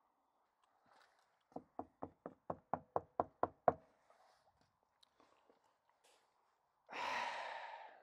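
Rapid knocking on a front door: about ten knocks in two seconds, growing louder. Near the end comes a breathy rush of noise lasting about a second, like a sigh.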